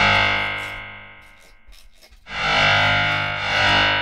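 Empress Zoia synthesizer playing a physical-modelled bowed-string patch: filtered noise through a delay-line resonator and reverb gives two sustained, low, buzzy string notes. The first swells at once and fades over about two seconds. The second swells in about two seconds in and dies away near the end, as the envelope's decay setting is changed.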